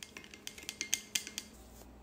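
Chopsticks stirring sauce in a glass measuring cup, a quick irregular run of light clicks as they tap against the glass, stopping about one and a half seconds in.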